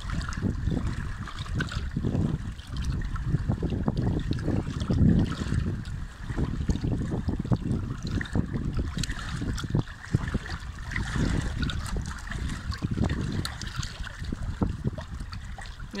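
Wind rumbling on the microphone over a steady wash of water, with scattered small clicks throughout.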